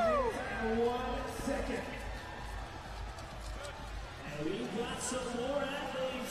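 Stadium crowd ambience: a single whoop from a spectator right at the start, then a low murmur of the crowd, with several distant voices coming up about four seconds in.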